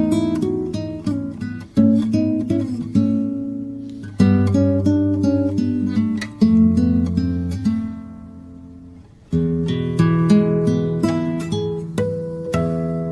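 Background music: acoustic guitar played in plucked phrases, each opening with a sharp attack and ringing away, with a lull before a new phrase comes in near the end.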